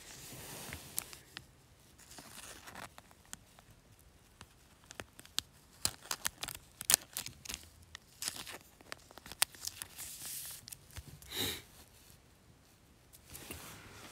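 Thin clear plastic card sleeve crinkling and rustling in the hands as a trading card is slid into it: a faint run of small crackles and clicks, with a brief louder rustle near the end.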